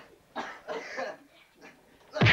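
Three short, throaty vocal bursts in quick succession from a person, starting about a third of a second in.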